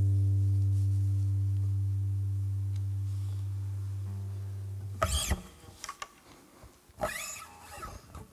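Final chord of a nylon-string classical guitar ringing out and fading away over about five seconds. After it come a few short scrapes, with low sound between them.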